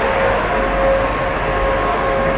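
Steady background noise with a faint, even hum underneath and no distinct events.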